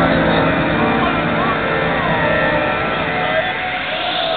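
Loud techno from a club sound system in a droning, sustained passage of held tones, heard from within the crowd in a large hall.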